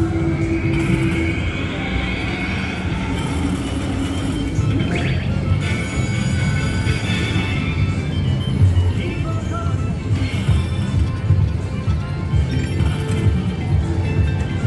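China Mystery slot machine playing its jackpot-feature music and chiming effects over a steady casino din.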